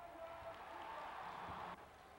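Faint steady rushing background noise with a faint high hum in the first part; the noise swells slightly and then cuts off abruptly near the end.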